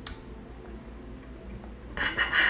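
A single sharp click, then faint steady room noise with one light tick near the end.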